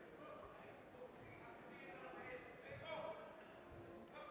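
Faint, indistinct voices of people in a large hall, with a few soft low thuds.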